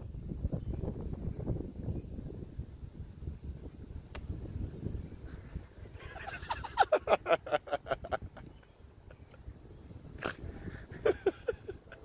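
A golf iron strikes the ball once, a sharp click about four seconds in, over a low wind rumble on the microphone. About two seconds later comes a loud run of quick pitched sounds, about eight a second, the loudest part.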